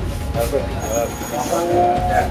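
Quiet background talk from a group of men over a steady low rumble.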